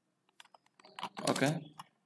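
Computer keyboard being typed on: a quick run of light key clicks in the first second, then one more click near the end. A short spoken "okay" falls between them.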